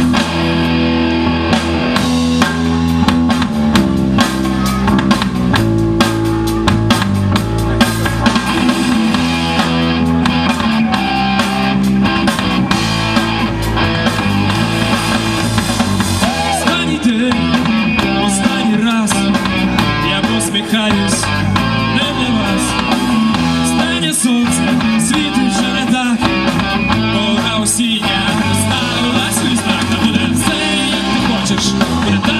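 Rock band playing live: electric guitars and a drum kit, with a man singing.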